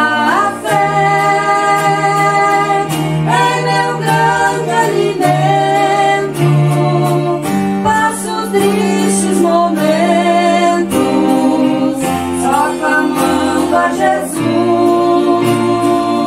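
A woman and a man singing a Christian worship song into microphones, their voices amplified over instrumental accompaniment with held low notes that change every second or two.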